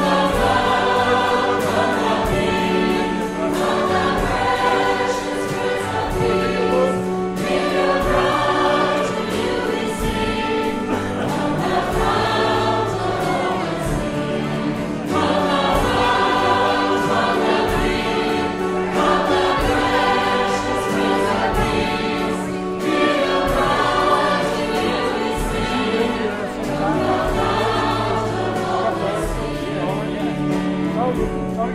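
Choir singing a slow gospel hymn with instrumental accompaniment, held chords over a steady bass line.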